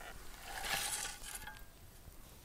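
A rustling scrape of dry, crumbly soil being disturbed, starting about half a second in and lasting close to a second, then fading.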